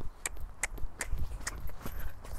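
Pony trotting on wet, muddy sand: regular hoofbeats, about two and a half a second, over a low rumble.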